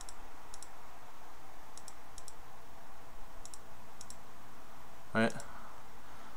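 Six mouse-button clicks in pairs about half a second apart, each a quick double click of press and release, pressing the clear and arrow keys on a TI-84 calculator emulator to clear its lists.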